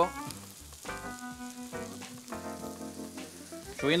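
Hot pan of rice and lobster sizzling as lobster stock is ladled in.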